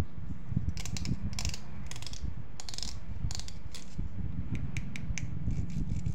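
Fingers plucking across the teeth of a small plastic toy comb, making runs of quick raspy, ratchet-like clicks, over a low steady rumble.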